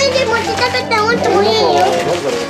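Young children's voices, high-pitched and excited, chattering and calling out.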